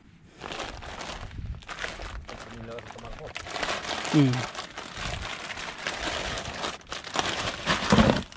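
Rustling and crinkling of a mesh landing net and a plastic bag being handled as caught fish are tipped into a plastic cooler. There is a brief hummed "mm" about four seconds in.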